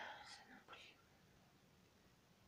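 A brief soft whisper of a word or two in the first second, then near silence.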